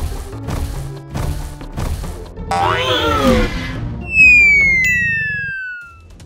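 Cartoon sound effects over background music: heavy stomping thuds about every half second as giant dinosaur feet walk, then a short call that rises and falls in pitch, and near the end a loud falling whistle, the loudest sound.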